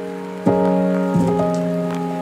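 Chill lo-fi music: soft sustained keyboard chords, with a new chord struck about half a second in and another just past one second, each fading slowly, over a faint steady hiss of ambient noise.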